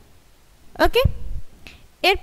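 A woman speaking a short phrase about a second in, with quiet pauses before and after it.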